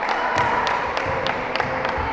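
A basketball bouncing on a wooden gym floor: a regular run of sharp taps and dull thumps, about three a second, over a steady background hum.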